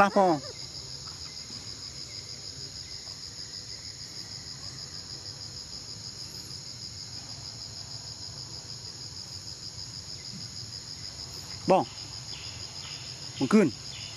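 Insects calling in a steady, high-pitched chorus with a fast, even pulse. Short voice sounds break in at the very start, about twelve seconds in, and again just before the end.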